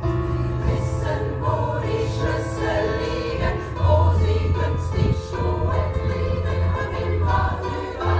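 A women's choir singing a German pop song in harmony, accompanied by a stage keyboard with a steady low bass line under the voices.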